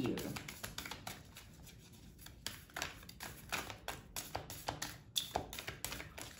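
A deck of oracle cards being shuffled in the hands: an irregular run of soft clicks and flicks as the cards slide and drop against each other. The cards are a little sticky.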